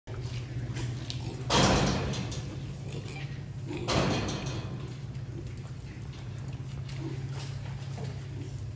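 Two short loud bangs, about one and a half and four seconds in, over a steady low hum.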